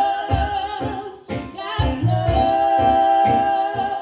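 Live church worship song: women singing into microphones over keyboard accompaniment with a steady low beat, one voice holding a long note through the second half.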